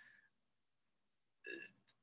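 Near silence, broken by one brief faint vocal noise from the speaker about one and a half seconds in.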